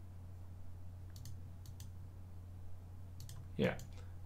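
Faint computer mouse clicks, a few in quick pairs about a second in and another pair a little after three seconds, over a low steady hum.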